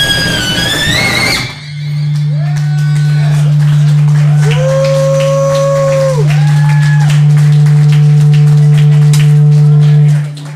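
Live amplified band music that stops abruptly about a second and a half in. A loud, steady low drone follows and holds to the end, with higher tones swelling up, holding and sliding back down over it.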